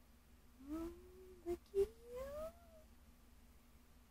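A woman's soft, high-pitched cooing, sliding up in pitch twice, with a couple of light clicks in between.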